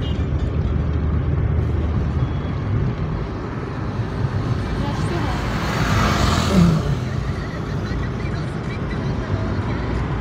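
Steady low engine and road rumble heard inside a moving car, with a louder rushing swell about six seconds in.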